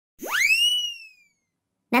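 A cartoon whistle-like sound effect: one tone that swoops quickly up in pitch, then dips slightly and fades away after about a second.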